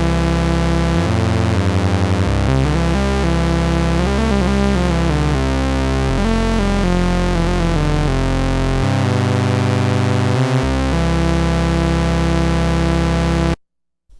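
Moog Grandmother analog synthesizer played duophonically, two notes sounding at once from its two oscillators under MIDI-to-CV control in duo mode. The held notes change every second or two, some gliding in pitch, and the sound cuts off suddenly near the end.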